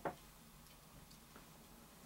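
Quiet room tone with a few faint clicks from small objects being handled.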